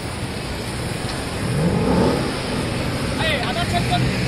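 A sports car's engine revving as it pulls away in street traffic, its pitch rising briefly about a second and a half in, over general traffic noise.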